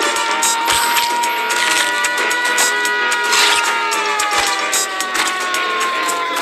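Music: one long held note that sags slightly in pitch in the second half, over scattered clattering clicks.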